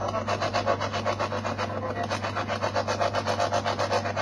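Spirit box sweeping through radio stations: a choppy run of static bursts, about six a second, over a steady low hum.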